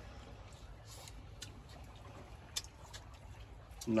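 Chopsticks faintly clicking against small bowls a few times while people eat, over a low steady rumble.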